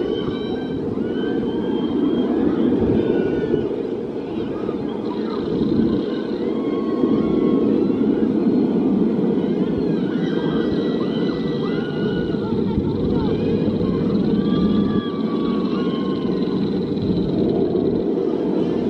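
Riders screaming and yelling on a flipping, spinning thrill ride, many short rising and falling cries over a steady low rush of ride noise.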